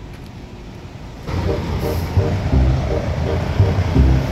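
A heavy motor vehicle's engine running in street traffic, a deep rumble that comes in loud about a second in after a quieter start and pulses regularly.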